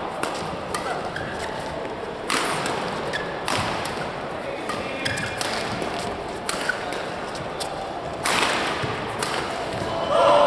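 Badminton rally: a shuttlecock struck back and forth by rackets, sharp hits every second or so, several of them much louder and ringing in the hall, with brief squeaks of court shoes between them.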